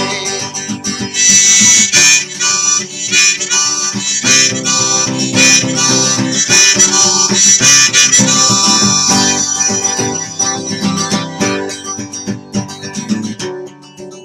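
Harmonica held in a neck rack playing an instrumental break over strummed acoustic guitar. It comes in loud about a second in and drops away near the end, before the singing resumes.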